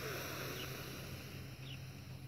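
A person's deep breath in: a steady breathy hiss that slowly fades, with two faint short chirps over a low steady hum.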